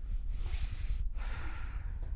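A woman breathing audibly through her nose while she pauses to think: two breaths in a row, each lasting under a second.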